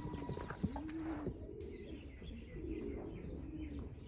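A bird giving low, repeated calls, each note rising and then falling, with faint higher chirps from other birds.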